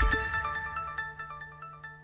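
Closing theme music of a TV news programme fading out: a run of short repeated notes over a held low note, growing steadily quieter.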